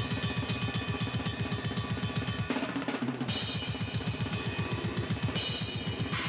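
Extreme metal drumming on a full kit: a very fast, unbroken run of double bass drum strokes under snare and cymbals. About halfway through, the cymbals drop out for under a second, then come back in.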